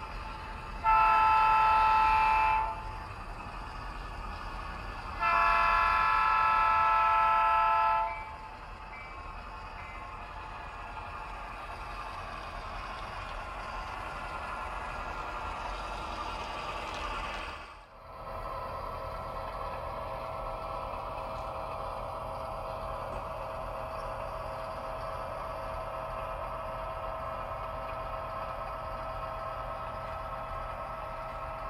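HO-scale diesel locomotive's sound decoder sounding its chord horn: two blasts of several notes at once, about two and three seconds long. The diesel engine sound then swells as the locomotive approaches. After a cut about 18 seconds in, the engine sound runs steadily.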